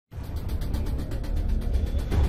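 Dramatic news background music: a rapid, even ticking over a deep bass rumble.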